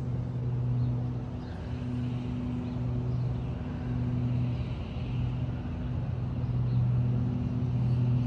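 A steady low mechanical hum, swelling and fading slightly every second or so.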